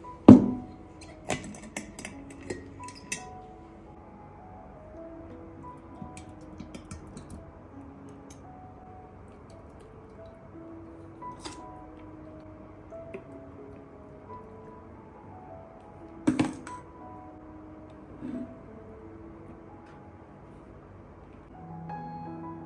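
Gentle instrumental background music with a melody of short held notes. Over it, a glass jar knocks down onto a table just after the start, and a metal spoon clinks against a steel bowl and the glass jar a few times, loudest about two-thirds of the way through, as sour cherries are scooped.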